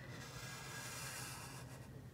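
A black Sharpie felt-tip marker drawn across paper in one continuous stroke, giving a faint, soft hiss that fades near the end.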